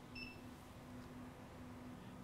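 A single short, faint high beep just after the start, over a faint steady low hum: the Profoto B1X studio flash signalling it has recharged after firing.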